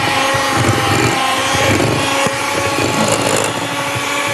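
Electric hand mixer running steadily with a motor whine, its beaters working cookie dough in a glass bowl.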